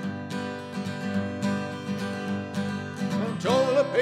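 Acoustic guitar strummed on its own in a short break between sung lines of a country-style song. A man's singing voice comes back in near the end.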